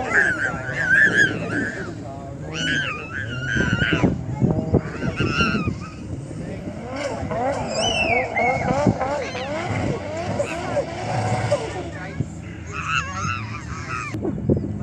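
A drift car's engine revving hard, rising and falling, while its tyres squeal in several wavering bursts as it slides sideways through a corner.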